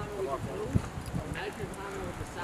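Soldiers' voices talking in the background, with a few dull knocks in between.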